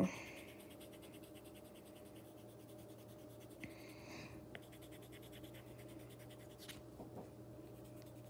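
Colored pencil scratching softly over paper as purple is shaded lightly over blue, faint against a steady low hum.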